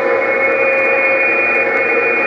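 President HR2510 radio's speaker putting out a steady hiss with a few faint steady whistle tones: an open channel between voice transmissions.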